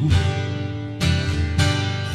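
Acoustic guitar strummed, its chords ringing, with fresh strums at the start and again about a second in.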